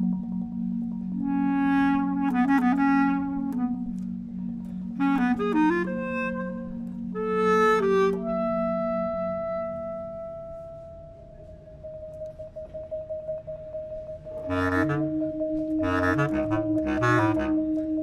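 A bass clarinet and marimba duo playing contemporary classical music. It opens with long low held notes, moves into short bright phrases, and then holds one long soft note that fades. A louder, busier passage starts near the end.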